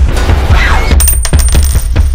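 Loud trailer sound design: a heavy low rumble under a series of sharp metallic hits, with a thin high ringing tone coming in about halfway.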